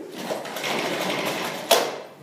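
Marker scratching across a whiteboard while writing, ending in a sharp click about a second and a half in.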